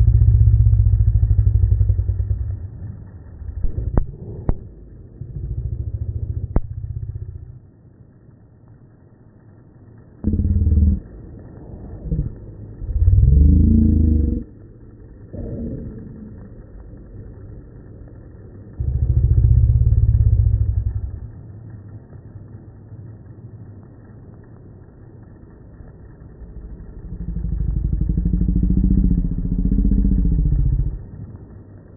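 Small single-engine plane's piston engine running at takeoff power, heard inside the cabin and played back in slow motion, so it comes out deep and dull. Loud low rumbling surges come and go over the drone, with a few sharp clicks a few seconds in.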